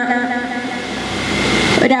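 A rushing noise with no pitch, swelling over about two seconds and loudest just before the end, with a faint steady high tone running through it.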